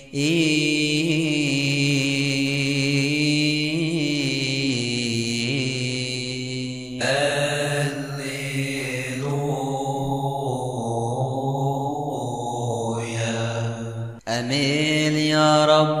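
Liturgical chanting: a voice holding long, slowly wavering melodic lines over steady sustained tones, with a brief dip about 14 seconds in.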